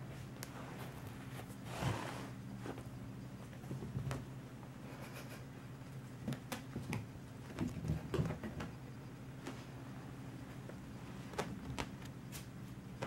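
Light scattered taps, scuffs and rustles of a kitten batting and pouncing on a small toy ball on carpet, over a faint steady low hum.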